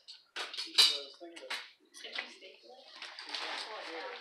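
Indistinct voices in the background, with a few light clinks and knocks of small hard objects being handled.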